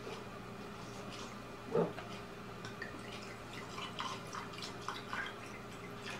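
A dull knock a little under two seconds in, then red wine poured from a bottle into a glass container over a raw Cornish game hen, with irregular small splashes and drips.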